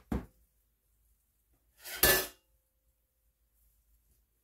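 Two brief clinks of kitchen utensils handled on a counter: a small one at the start and a louder one about two seconds in.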